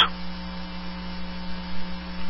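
Steady electrical mains hum with faint hiss on a recorded telephone call line.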